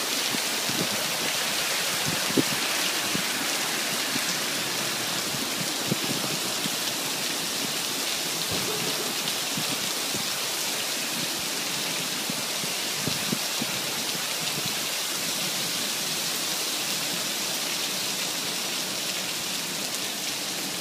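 Heavy rain pouring steadily onto a flooded asphalt parking lot, a dense even hiss. A few sharper taps stand out, about two and a half, six and thirteen seconds in.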